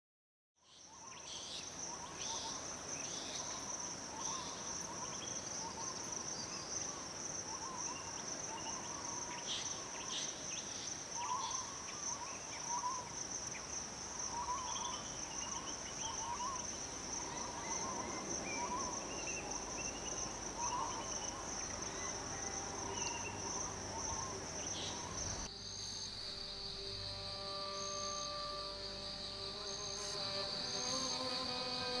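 Insects droning in a steady high-pitched chorus, with scattered short chirping calls over it, fading in from silence about half a second in. About 25 seconds in, it gives way to a lower-pitched insect drone alongside several steady tones.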